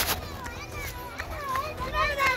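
A child's high-pitched voice calling out in short, wavering, falling cries. A sharp click comes at the very start.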